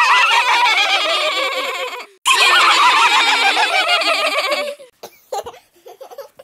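Babies laughing, several high voices overlapping in two long peals with a brief break about two seconds in, dying away about a second before the end.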